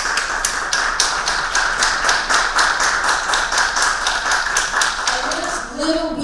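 Audience applauding: many hands clapping densely, dying down near the end.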